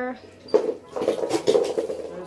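Makeup items clattering and clinking as a handbag and a table of makeup are rummaged through, a quick run of small knocks and rattles from about half a second in.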